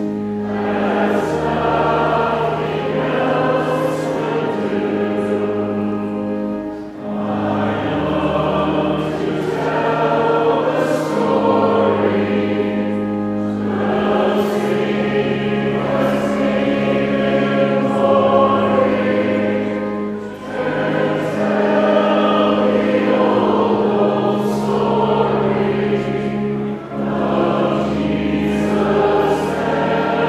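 Choir singing a hymn to pipe organ accompaniment, the organ holding steady low notes that change every few seconds. The singing comes in long phrases with brief breaks for breath about every six or seven seconds.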